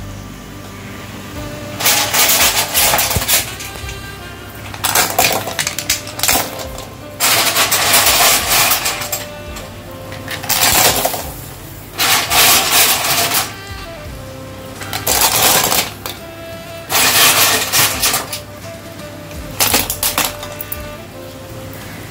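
Clam shells clattering into a stainless steel pot of hot water, handful after handful: about nine clattering spells of a second or so each, roughly every two seconds. Quiet background music runs underneath.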